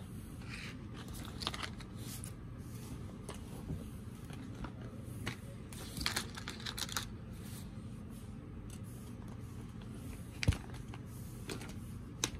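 Rustling and light clicking of items and fabric being handled and shifted inside a denim tote bag, in scattered short bursts, with one sharper knock about ten and a half seconds in.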